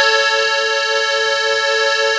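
Hohner Compadre three-row button accordion in E holding one long, steady chord on a push of the bellows, with a slight regular waver in its tone.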